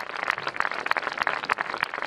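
Crowd applauding: many hands clapping in a dense, irregular patter.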